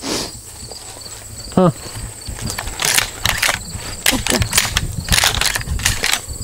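Insects chirping steadily, with a short spoken 'huh' about a second and a half in and irregular rustling and knocking noises through the second half.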